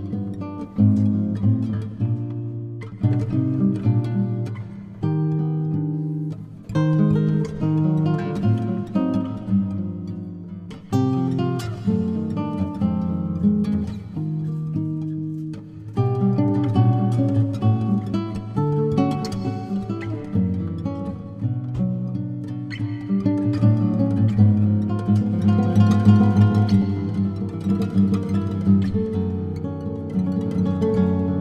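Solo nylon-string classical guitar played fingerstyle in a jazz improvisation: plucked chords and melody lines in short phrases, with new attacks every second or two. The playing grows busier and a little louder in the last third.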